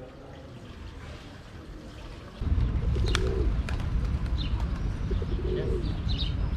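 Feral pigeons cooing, with a few higher bird chirps and clicks, over a steady low rumble that starts about two seconds in after a quiet stretch.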